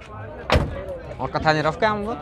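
A single sharp bang about half a second in, short and loud, then men talking close by.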